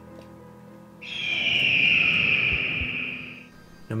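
A single long, high eagle screech sound effect that starts suddenly about a second in and fades out near the end, over soft background music.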